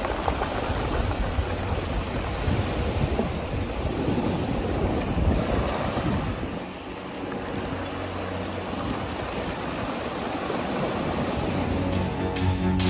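Small waves breaking and washing up over a pebble shore in a steady rush of surf, easing briefly about halfway through.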